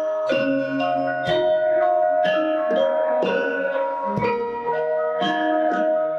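Javanese gamelan ensemble playing: bronze metallophones and gong-chimes struck in a steady pulse of about two strokes a second, their pitched tones ringing on and overlapping. A deeper struck note sounds about every three seconds.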